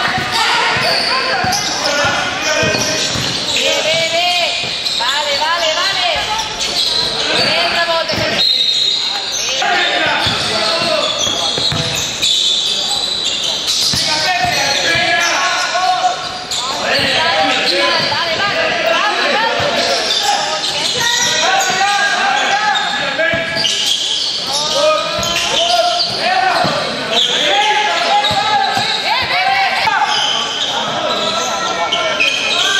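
Basketball game in an indoor sports hall: a basketball bouncing on the court amid the continual voices of players and spectators, echoing in the large hall.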